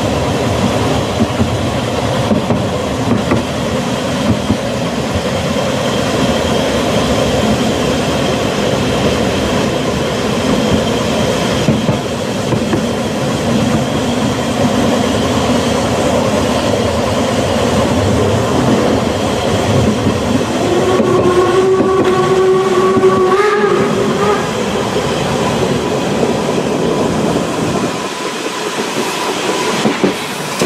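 Narrow-gauge steam train running, heard from on board: a steady rumble with wheels clicking over rail joints. About two-thirds of the way through, the locomotive's steam whistle sounds for about three seconds, ending on a brief higher note.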